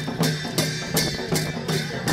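Sakela dance music: a dhol drum and cymbals beat a steady rhythm, about three strokes a second.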